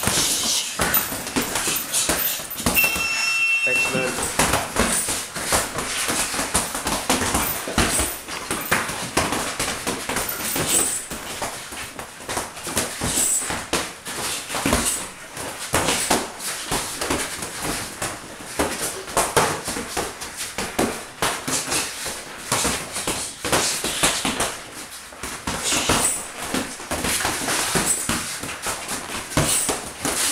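Boxing gloves thudding on gloves and bodies during sparring, an irregular run of punches and scuffing feet on the ring floor, with a brief high squeak about three seconds in.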